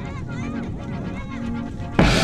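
Background music with a run of short, wavering honking calls like a goose's over it.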